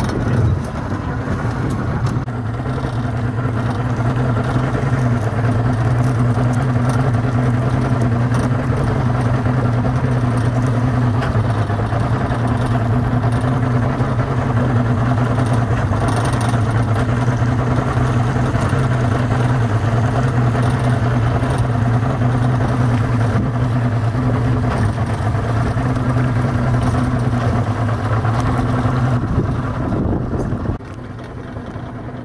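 Boat motor running at a steady speed, an even low hum that holds throughout, dipping briefly about a second in.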